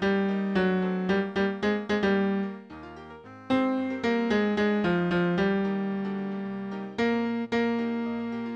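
Computer playback of a choral score on piano sounds: the vocal melody line over a piano accompaniment of quick repeated chords. The notes start sharply and fade. The music thins out briefly about three seconds in, at a rest in the vocal line, then picks up again.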